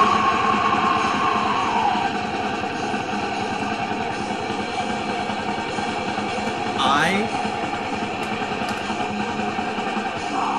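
Dense, distorted heavy rock music playing from a cassette tape through the small built-in speaker of a Crosley CT200 portable cassette player.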